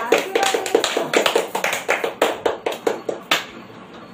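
Hands clapping in quick, even claps, about five a second, stopping about three and a half seconds in.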